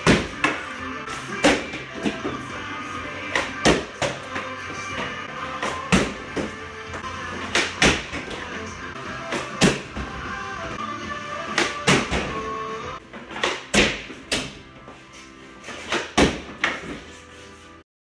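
Background music, with sharp knocks of hockey pucks every second or two, often in pairs: the stick striking the puck, then the puck hitting the cardboard board. The music thins out after about thirteen seconds, and the knocks go on.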